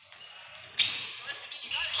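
Game sound on a hardwood gym court: a basketball bouncing and sneakers squeaking as players run, with crowd voices, quiet at first and picking up about a second in.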